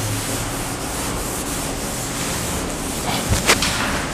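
A chalkboard being wiped clean with a duster: a steady scrubbing of the duster across the board, with two sharp knocks a little after three seconds in.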